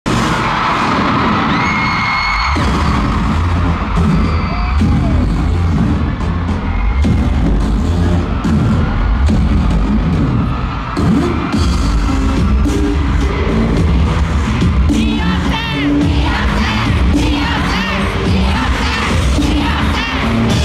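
Loud live pop dance music over a concert sound system, with a heavy bass beat, and a crowd cheering and screaming over it.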